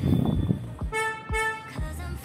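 Two short honks of a vehicle horn about a second in, heard over background music with a steady beat.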